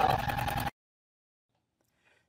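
Juki sewing machine running as it stitches quilting lines through soft vinyl and foam, a steady motor whine with fast needle strokes, which cuts off abruptly to silence less than a second in.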